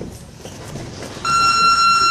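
Gym round-timer buzzer sounding one steady, high-pitched electronic tone that starts abruptly a little over a second in.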